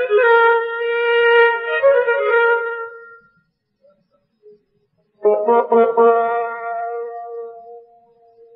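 Solo Persian classical instrumental music in the Dashti mode: a single melodic instrument holds sustained, ornamented notes. The phrase trails off about three seconds in, and after about two seconds of near silence a new phrase comes in sharply and fades away near the end.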